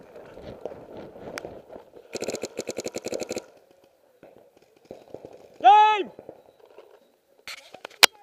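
A paintball marker firing a rapid burst of about a dozen shots a second for just over a second. A few seconds later a player gives one loud shout.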